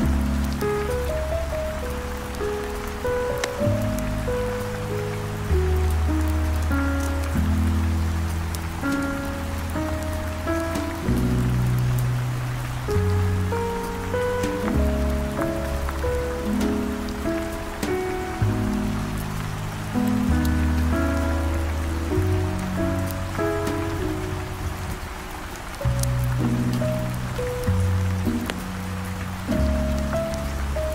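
Smooth jazz playing slow, sustained notes with a deep bass line over a steady hiss of heavy rain, with scattered faint crackles from a wood fire.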